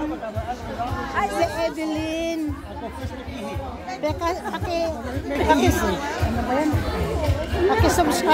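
Several women talking and chatting close by, with music playing in the background and a low beat underneath.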